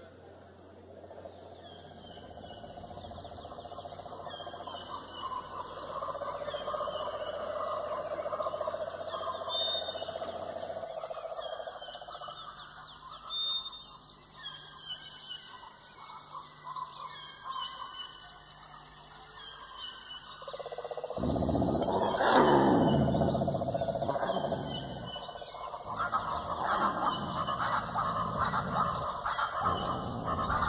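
Recorded animal sounds fading in: repeated short falling bird chirps, then a louder animal call that bends up and down in pitch, starting about two-thirds of the way through.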